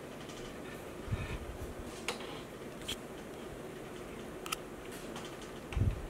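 Quiet room tone with a few faint, sharp clicks and a couple of soft low knocks, the small sounds of metal feeding tongs and an animal shifting inside a glass enclosure.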